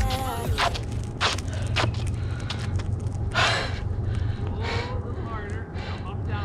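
A young man breathing hard, with two loud gasping breaths about three and a half and five seconds in, out of breath and excited after landing five eclipses in a row. Early on his footsteps knock on the asphalt court about every half second as he walks up. A steady low wind rumble sits on the microphone throughout.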